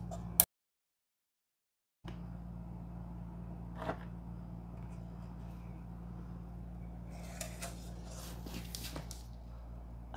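Steady low electrical hum with a few faint small clicks of a hex key and hands working the screw of the printer's SuperPINDA probe holder. A sharp click near the start is followed by a second and a half of dead silence.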